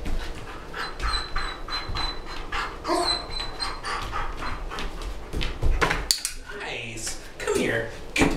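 German Shepherd dog panting rapidly and rhythmically, several breaths a second.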